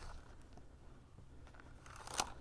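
Very quiet: a few faint ticks from a Klein Tools fish tape being pushed by hand down through a drilled hole in a wall's top plate, over a low steady hum.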